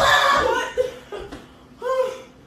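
People laughing: a loud burst of laughter that trails off into short laughs, with another laugh near the end.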